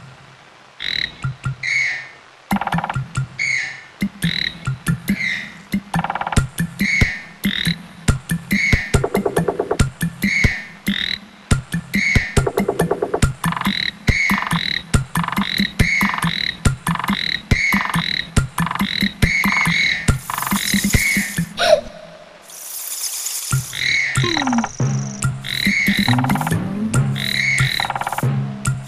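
A tree frog's croaking call repeated in a steady rhythm, about three calls every two seconds, over a beat of rapid tapping clicks. Near the end a hissing rush cuts in for a couple of seconds, then low musical notes join the rhythm.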